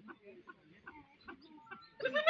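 Faint chicken clucking in short, scattered notes, with faint distant voices.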